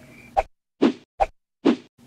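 Four short cartoon-style sound-effect blips about half a second apart, with dead silence between them.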